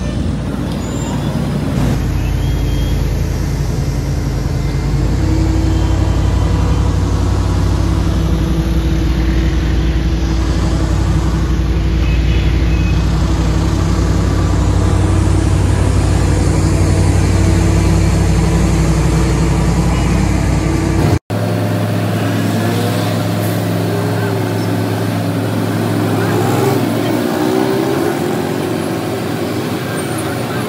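Heavy diesel engine running steadily at a constant note amid street traffic. About two-thirds of the way through, the sound breaks off abruptly for an instant. A different engine note follows, with passing vehicles.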